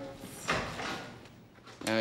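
A door shutting once, about half a second in, with a short ring-out as it fades.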